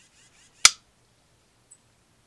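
A single sharp click from the Yamaha F90's power tilt/trim relay engaging as the trim switch is thrown. No trim motor running follows: the relay and wiring deliver 12 volts, but the tilt/trim motor has failed.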